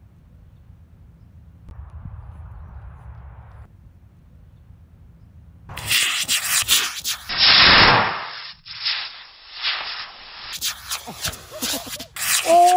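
Estes model rocket motor igniting about six seconds in with a sudden, loud rushing hiss that peaks a couple of seconds later, followed by uneven crackling surges as it burns. Before ignition there is only a low wind rumble on the microphone.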